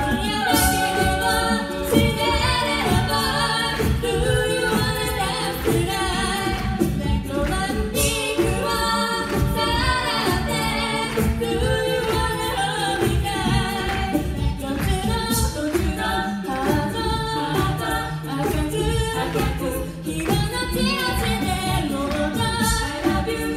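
A female a cappella group singing a song live through microphones, several voices in close harmony over a steady low vocal line.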